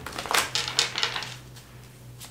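A deck of tarot cards being shuffled by hand: a quick run of crisp card clicks and flutters for about the first second, then quieter.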